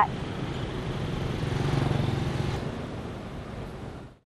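Congested road traffic: the engines of buses, cars and motorbikes make a steady rumble that fades out near the end.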